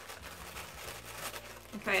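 Tissue paper crinkling faintly as the sticker sealing it is peeled back, in small scattered rustles.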